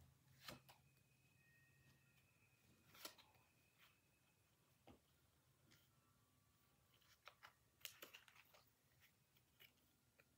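Near silence with faint, scattered rustles and soft clicks of Pokémon trading cards being handled in the hands: a few single ones early and around three seconds in, and a small cluster between about seven and nine seconds.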